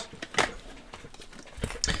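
Hands handling trading cards and clear plastic card holders: a few light taps and clicks, one about half a second in and a couple more near the end, over a quiet background.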